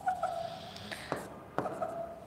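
Writing on an interactive smart board's glass screen: a few light taps and strokes as a short label is written.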